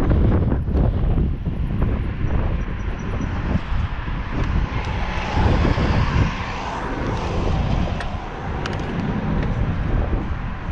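Wind buffeting the microphone of a camera on a moving bicycle, with a city bus passing close by in the middle, its engine and tyres swelling to a rush and fading again.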